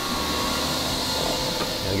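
Steady hissing rush of machine-shop noise, the sound of the shop's machinery running on the floor.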